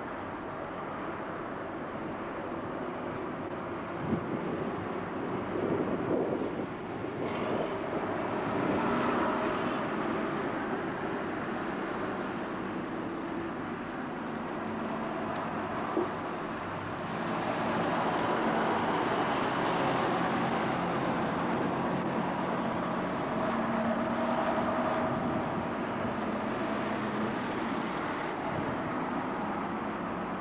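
Double-decker bus's diesel engine running as it moves off and drives past, with street traffic around it; the engine sound gets louder about seventeen seconds in as a bus turns close by. Two brief sharp clicks, about four and sixteen seconds in.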